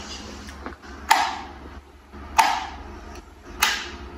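Britânia B30 L desk fan running with a low steady motor hum, and three sharp clicks about a second and a quarter apart, each ringing briefly, as the fan's head mechanism is worked.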